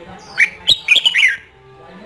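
Caged red-whiskered bulbul decoy calling: a quick string of sharp, high chirps with falling pitch, bunched just before and after a second in.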